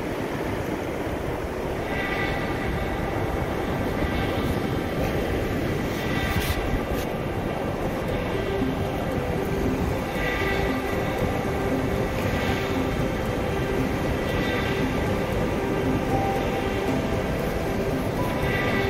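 Steady wind and surf noise on an open beach, with faint background music under it.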